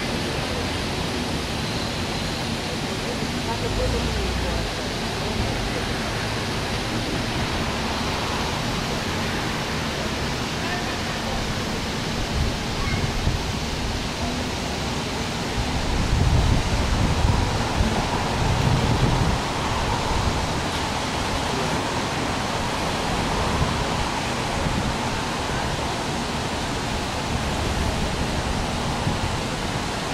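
Steady rushing hiss of a plaza fountain's water jets, with people talking indistinctly in the background. A louder low rumble swells about sixteen to nineteen seconds in.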